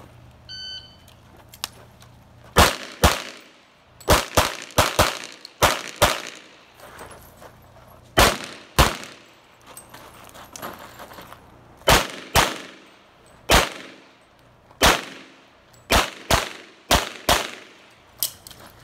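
An electronic shot-timer beep just over half a second in, then a string of about nineteen pistol shots. The shots come mostly in quick pairs about half a second apart, each with a short echo trail, with pauses of a second or more between pairs.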